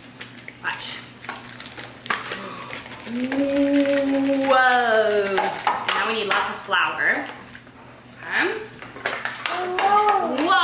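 A drawn-out wordless vocal sound, held for about two seconds near the middle and rising then falling in pitch, over light crinkling of a foil packet being opened and poured.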